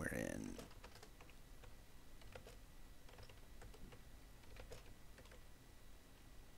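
Faint, irregular keystrokes on a computer keyboard as short commands are typed, after a brief voice sound at the very start.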